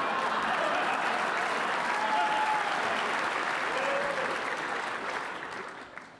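Audience applauding, a steady clatter of many hands that thins out and dies away about five seconds in.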